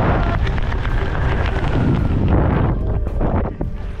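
Wind buffeting the action camera's microphone as a tandem parachute glides in to land, a loud, steady rush that falls away near the end.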